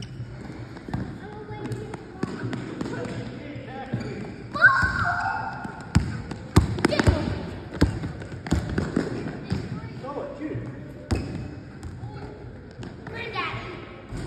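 Basketballs bouncing on a hard gym floor: scattered thuds at irregular intervals, mixed with players' voices and shouts.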